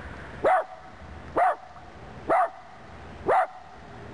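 Long-haired miniature dachshund barking four times, about a second apart.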